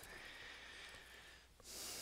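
Faint breathing close to a headset microphone: a soft breath with a thin faint whistle, then a short breath hiss near the end.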